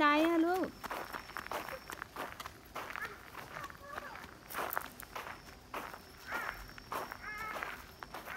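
Footsteps on a gravel path, an irregular run of short crunching steps from several walkers, with a woman's voice briefly at the start and a few short child-like vocal sounds near the end.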